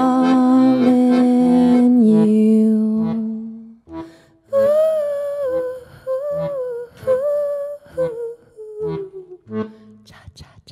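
A woman's voice singing with a Weltmeister piano accordion. A long held accordion chord fills the first two seconds. After a brief pause she sings a slow melody over short bass-and-chord notes, and the song fades out at the end.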